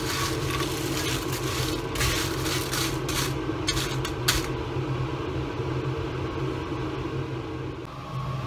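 Dried red chilies being dry-roasted in a frying pan, a wooden spatula stirring and scraping through them with a dry rustle in the first four seconds or so, over a steady low hum.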